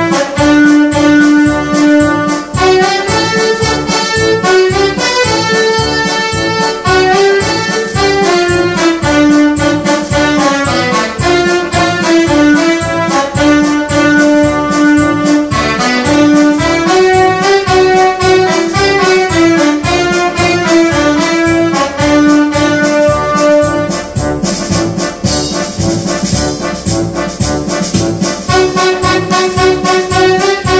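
Yamaha electronic keyboard playing an instrumental patriotic tune: a melody line over a steady rhythmic backing.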